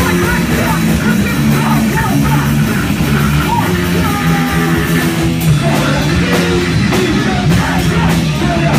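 Live punk band playing at full volume: distorted electric guitar and bass holding low chords, driving drum kit hits, and shouted vocals over the top.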